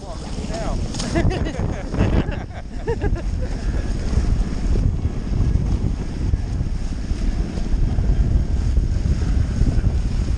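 Wind buffeting the microphone of a camera on a Hobie 20 catamaran sailing fast, with water rushing along the hulls. The noise is steady, and some faint voices come through it in the first few seconds.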